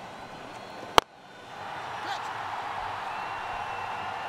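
A cricket bat striking the ball: one sharp crack about a second in, the shot that goes for four. After it, a steady background noise swells up and holds.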